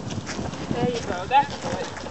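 Footsteps and a small wagon rolling over dry, leaf-strewn ground as a harnessed Newfoundland dog pulls it by its shafts. The sound is a scatter of soft irregular crunches and scuffs, with a brief spoken word about a second in.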